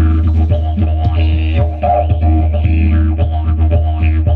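Didgeridoo played live: a steady low drone with overtones that sweep up and down as the player shapes the sound, over a regular percussive beat.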